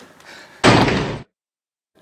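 An edited rubber-stamp slam sound effect: one heavy thud about half a second long that starts abruptly and cuts off dead into silence.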